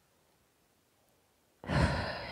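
Near silence, then near the end a woman's audible breath, a short breathy rush without pitch.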